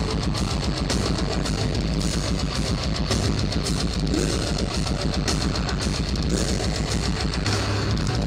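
Metalcore band playing live at full volume: distorted electric guitars over fast, dense drumming, with no pause.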